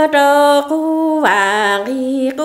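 A woman singing Hmong kwv txhiaj sung poetry unaccompanied, in long held notes with a dip in pitch and a slide back up about midway.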